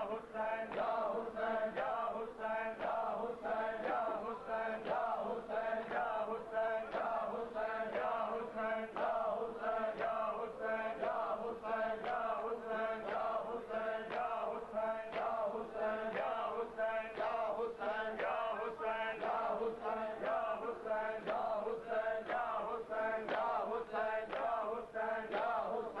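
A crowd of men chanting a noha (Shia mourning lament) together, with rhythmic chest-beating (matam) keeping a steady beat under the voices.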